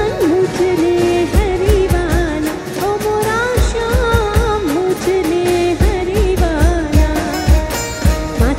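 Live garba music played through a PA: a woman sings a melody over the band, with a steady drum beat underneath.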